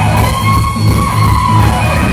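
Live electric blues-rock: an electric guitar holds one long note, bent slightly upward, over a loud, pulsing electric bass.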